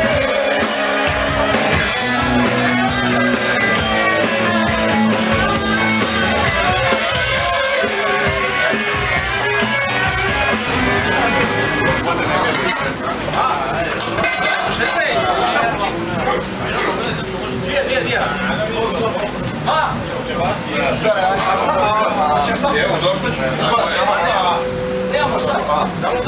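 Live rock band music over loud crowd chatter. About halfway through the music drops back and men's voices talking take over.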